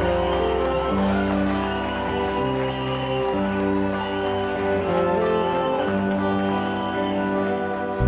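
A live rock band playing: electric guitars, bass, keyboard and drums, with held notes that move in steps over steady drumming.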